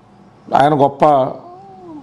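A man's voice: a short burst of speech, then a softer drawn-out vocal sound that rises and falls in pitch.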